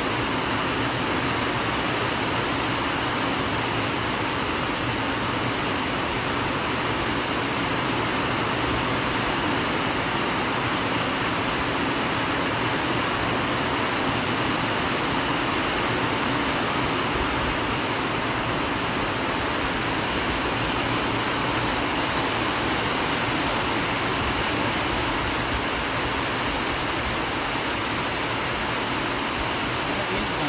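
Heavy rain falling steadily, a constant even hiss.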